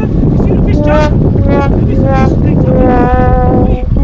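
Heavy wind rumble on the microphone over a running boat, with a man's short calls and one long drawn-out call near the end.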